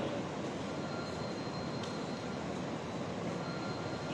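Steady background room noise, an even hiss with a faint thin high tone running through it, during a pause in speech.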